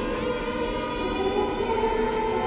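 Choral music, voices holding long sustained notes that shift to new chords around the middle.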